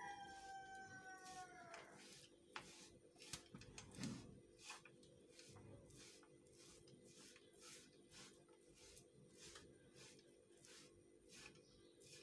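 Near silence, with faint scrapes of a silicone spatula stirring a dry, crumbly coconut mixture in a non-stick pan, in short strokes about once or twice a second.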